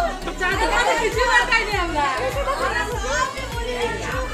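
Several voices chattering at once over background music with a steady low beat.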